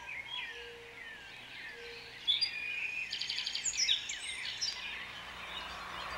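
Songbirds singing: several short chirping calls with falling whistles, joined about two seconds in by a louder, rapid trilling song. A faint steady low hum runs underneath.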